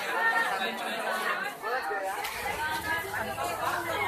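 Several young people chattering and talking over one another, with a low rumble coming in about halfway through.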